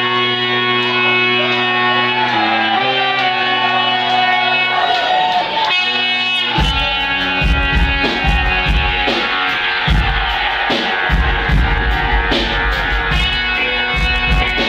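Live reggae band playing amplified music: the song opens on held chords with no drums or bass, then bass and drum kit come in about halfway and the full band plays on with guitar.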